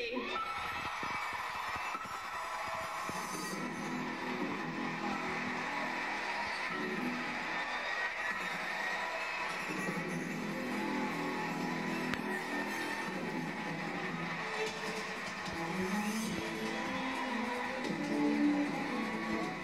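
Audience applauding over the ceremony's play-on music, heard through a television's speaker.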